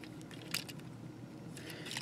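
Faint handling of a plastic Transformers Whirl action figure being transformed: rubbing and light clicks of its parts as they are folded, with a sharper click about a quarter of the way in and a few more near the end.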